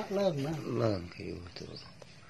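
Speech only: a person talking for about the first second, then faint background noise.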